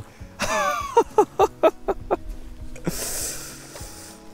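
A hooked trout splashing and thrashing at the water's surface while being reeled in, with a short burst of splashing near the end. An excited shout comes early, and background music runs underneath.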